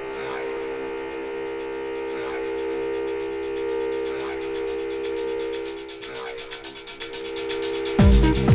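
Breakdown of a 1990s hard trance track: a held synth chord with the kick drum and bass dropped out. A fast, high ticking pattern grows denser toward the end. The full beat crashes back in right at the end.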